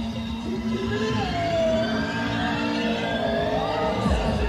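Live band music: wavering, gliding siren-like tones over a steady low drone.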